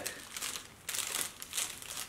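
Small plastic bubble-wrap pouch crinkling as it is handled and opened, in irregular rustling bursts.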